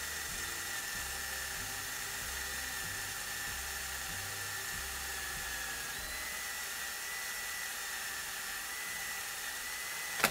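Ryobi cordless drill running steadily with a high, even whine as it drills a hole through a new rocker bushing held in a fixture.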